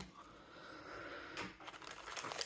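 Faint handling noise of a hand reaching into a cardboard display box and drawing out a trading-card pack: a soft rustle, with a light tap about one and a half seconds in and small ticks near the end.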